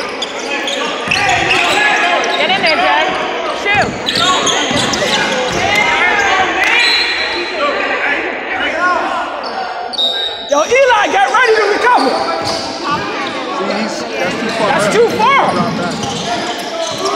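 A basketball being dribbled on a hardwood gym floor during play, with voices calling out around the court, all echoing in a large hall.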